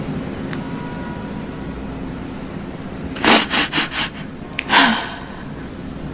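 A woman crying: a quick run of four or five shaky, gasping sobs about halfway through, then one more. A low steady hum runs underneath.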